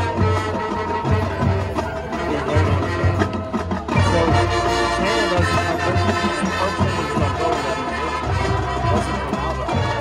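High school marching band playing its field show: massed brass and woodwinds over a pulsing low drum line. The ensemble swells fuller about four seconds in.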